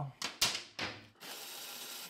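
Hand tools working steel bolts on a motorcycle frame bracket: three sharp metal clinks in the first second, then a steady scraping hiss for most of the last second.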